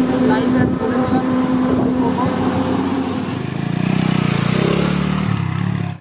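Motor vehicle engines running on the road: a steady engine hum, then a changing engine note in the second half, cut off suddenly at the end.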